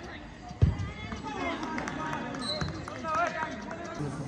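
A single sharp thump about half a second in, a football being kicked on an artificial-turf pitch, with a softer knock later, amid voices calling out from players and onlookers.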